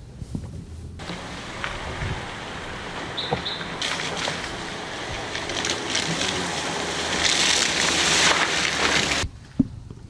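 A Ford Focus hatchback driving slowly over a rutted, muddy dirt track, its tyres sloshing through puddles and mud. The noise builds over several seconds and cuts off suddenly near the end.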